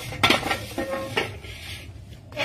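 Handling noise from a handheld phone being moved about: a few light clicks and knocks, the loudest just after the start and another about a second in, over a faint rustle.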